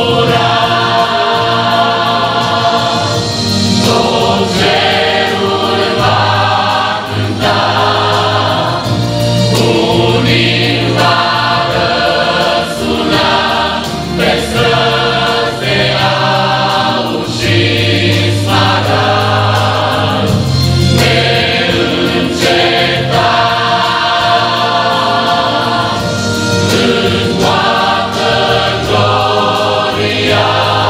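Large mixed choir of men's and women's voices singing a Romanian Pentecostal hymn together, loud and sustained, the melody moving from held note to held note.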